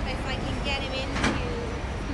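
Indistinct voices of passers-by over a steady low rumble, with one sharp knock or click a little past a second in.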